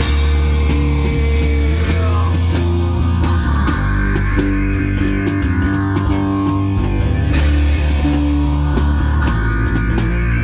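Live rock band playing loud: electric guitar and bass guitar hold heavy low notes that change every second or two over a drum kit, with frequent drum and cymbal hits.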